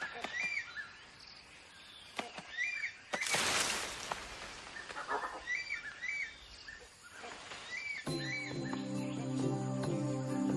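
Forest ambience with a bird repeating short chirping calls every second or two, broken by a brief rushing noise about three seconds in. Soft background music with sustained tones comes in near the end.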